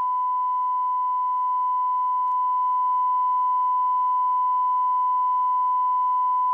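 Broadcast line-up tone: one steady, unbroken high-pitched beep at a constant level, the reference tone played over the junction between two webcast programmes.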